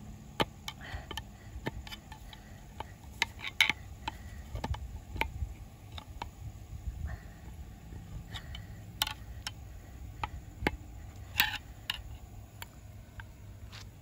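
Irregular metal clicks and scrapes of a steel tool working a snap ring onto the shaft of a centrifugal clutch, a few of them sharper and louder.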